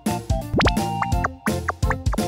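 Light, bouncy background music with a regular beat. About half a second in, a quick upward-sliding cartoon sound effect plays over it.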